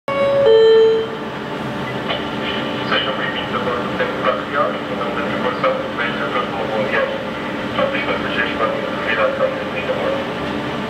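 A brief loud pitched tone at the very start, then a steady mechanical hum with scattered background voices and clatter over it.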